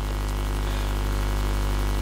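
Steady low electrical hum with a stack of evenly spaced overtones, holding level throughout.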